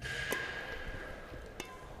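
Two sharp strikes of badminton rackets on a shuttlecock, about a second and a half apart, as the shuttle is hit back and forth in a rally.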